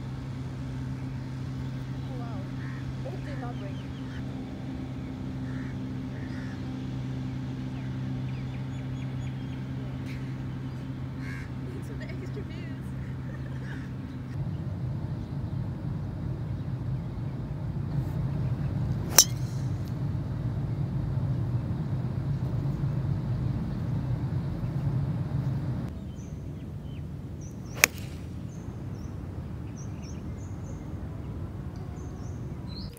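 Two sharp golf club strikes on the ball, about nine seconds apart: a driver off the tee, then a half six-iron from the fairway. Under them is steady outdoor background noise, with a low hum and bird chirps in the first half.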